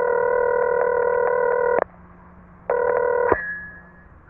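Telephone ringing tone: one ring of about two seconds, then a short second ring cut off by a click as the line is picked up.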